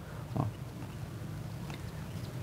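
A brief, low, grunt-like voice sound about half a second in, then a faint steady low hum.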